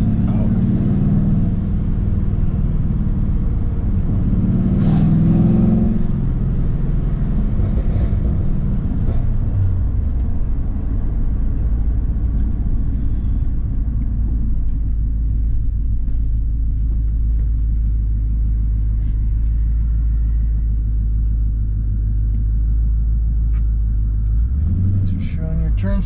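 Pontiac GTO V8 engine running with a steady low rumble, its note shifting near the end.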